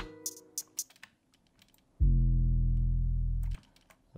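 A single 808 bass note, a low sustained tone, starts about halfway in, holds for about a second and a half and cuts off sharply. Before it, a few soft clicks.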